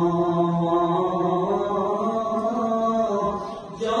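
Devotional chanting by men's voices in long held notes, the pitch stepping up a little after about a second and a half. It breaks off briefly just before the end and starts again.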